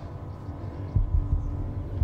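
A low steady drone with a faint held tone above it and a few soft low thumps, the clearest about a second in.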